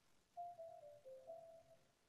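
Faint meditation background music: a slow melody of single soft notes, one after another, starting about half a second in and stepping down in pitch before rising again.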